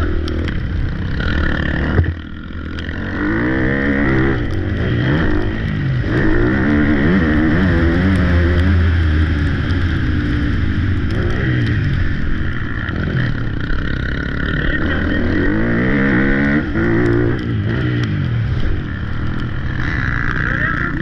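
Dirt bike engine revving hard, its pitch climbing again and again as it accelerates and shifts up through the gears, with a sharp knock about two seconds in followed by a brief easing off of the throttle.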